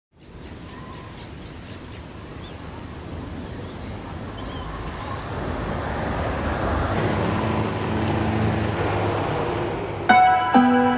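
Ambient sound-effect intro to a pop song: a steady rushing noise that swells gradually louder, with a few faint high chirps, and a low steady drone joining about seven seconds in.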